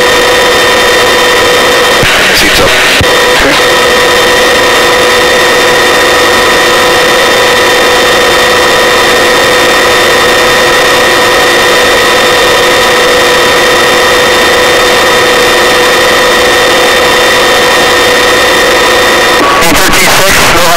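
Helicopter cabin noise over a steady hiss, dominated by a whine made of several constant tones from the drive train. The whine breaks briefly about two to three seconds in and cuts off shortly before the end.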